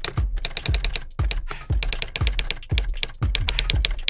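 Rapid computer-keyboard typing clicks, a sound effect for typed-out text, over background music with a steady deep beat about twice a second.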